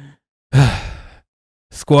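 A man's loud, breathy sigh close to the microphone, its pitch falling as it fades over about half a second. He starts speaking near the end.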